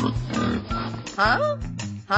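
Cartoon pig sound effect: a short oink that falls in pitch about a second in, over background music with a steady beat.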